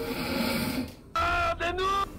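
Snoring: a rasping breath in, then a pitched, whistle-like breath out broken in two, near the end.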